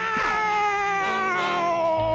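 A cartoon cat-like yowl: one long, wavering cry that falls slowly in pitch.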